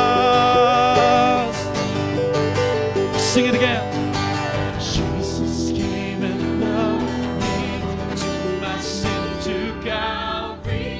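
Worship song with a choir and acoustic guitar: a sung note is held for the first second or so, then the music carries on in a largely instrumental passage of strummed guitar before the voices come back in at the end.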